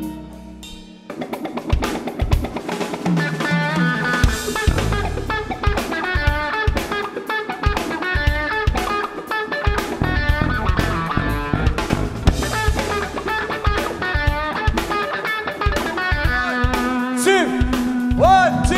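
Live blues-rock band playing an instrumental passage: a single-cut solid-body electric guitar plays melodic lines over drums and bass. After a brief quieter moment, the full band comes in about a second in.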